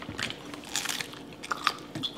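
A person biting and chewing crisp food, with a few short crunches.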